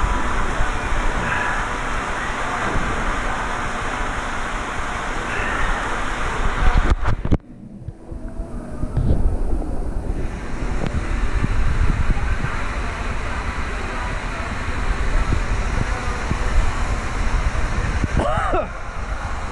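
Steady rushing noise, then after a sudden break about seven seconds in, water pouring from the waterslide exits and splashing into the splash pool.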